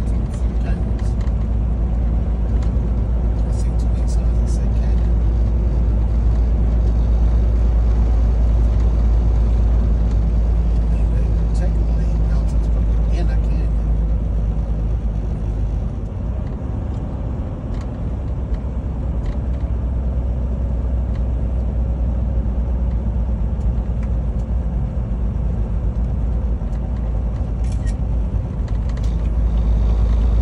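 Steady low rumble of a semi truck heard from inside its cab while cruising at highway speed: engine drone with road and wind noise.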